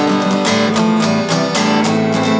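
Acoustic guitar strummed in a steady rhythm, about four strokes a second, its chords ringing on between strokes.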